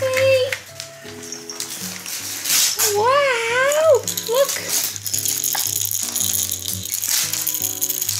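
A baby's toy rattle shaken in repeated bursts over a gentle background melody, with a brief sing-song vocal call that rises and falls about three seconds in.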